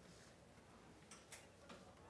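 Near silence, broken by a few faint, short ticks of a marker tapping the whiteboard during writing, about a second in and again near the end.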